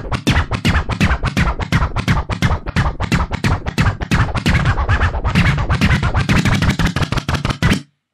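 Music played from a turntable through timecode vinyl, scratched back and forth in quick, choppy cuts. It stops just before the end.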